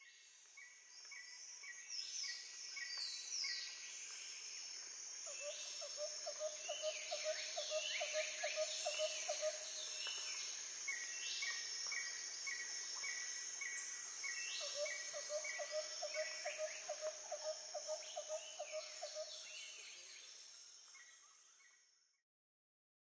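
Several birds calling over a faint background hiss, with strings of quick repeated short notes, high thin whistles and falling chirps. A lower pulsing call comes in two runs of several seconds each. The sound fades in at the start and fades out near the end.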